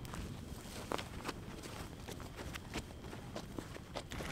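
An open wood fire of burning burrobrush, giving scattered, irregular sharp crackles over a steady low rush, with footsteps on dry ground close by.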